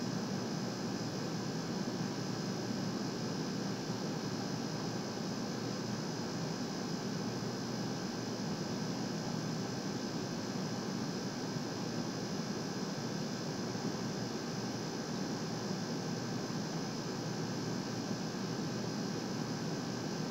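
Steady hiss with a faint electrical hum and no distinct events: background room tone and recording noise.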